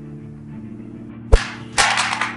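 Low sustained background music, then a sharp hit followed by a half-second whooshing swish: dubbed fight sound effects.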